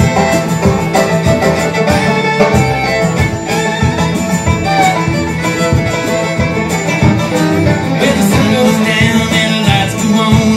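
A bluegrass band playing a song's instrumental opening, led by a banjo picking a fast run, with upright bass and acoustic guitar underneath.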